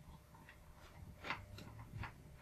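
A few faint clicks from a small screwdriver and the touch screen's plastic housing being handled. The clearest click comes about a second and a third in.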